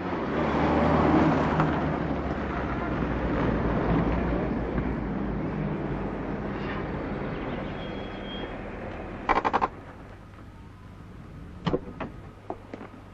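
Car driving past and pulling in, engine and tyre noise slowly fading. A short burst of rapid clicks comes about nine and a half seconds in, and a single knock just before the end.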